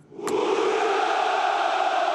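Ranks of soldiers shouting a long, drawn-out "Ura!" (hurrah) in unison, starting a moment in and holding steady.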